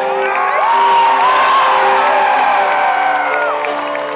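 Arena crowd cheering, with high screams and whoops rising and falling, over a live rock band's music with steady held notes.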